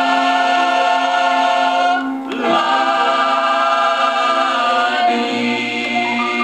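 Southern gospel group singing in harmony on a vinyl LP record, holding long chords, with a brief break about two seconds in before the next phrase begins.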